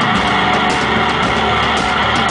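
Loud live rock from a guitar-and-drums duo: heavily distorted electric guitar over a drum kit being played hard.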